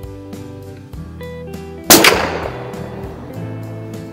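A single rifle shot about two seconds in from a Winchester 52D .22 rimfire target rifle firing Federal Auto Match, a sharp crack with a ringing tail that dies away over about a second. Guitar music plays underneath.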